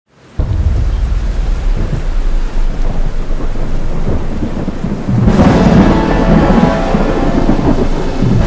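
Thunderstorm sound effect: steady rain with low rumbling thunder, swelling into a louder, fuller thunderclap about five seconds in.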